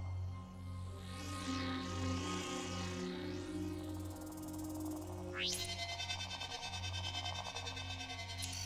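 Low, sustained film-score music under electronic scanning sounds from a flying probe's laser scanner. Wavering high sweeps come in the first half, a sharp rising whine about five and a half seconds in, then fast, even pulsing.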